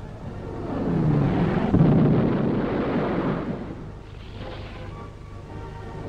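A propeller fighter's piston engine, heard as a Hawker Sea Fury comes in to land on a carrier deck. The engine noise swells to a peak about two seconds in, with a shifting pitch, and dies away by about four seconds.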